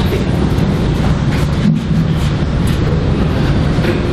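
A steady low rumble with a few faint, short knocks and shuffles.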